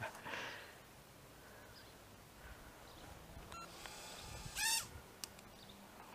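Quiet outdoor background with a faint click a little past three and a half seconds. About three quarters of the way in comes one short, high, wavering bird call.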